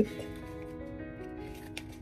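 Soft background music with long held notes, with a few faint clicks of a small paper packet being handled.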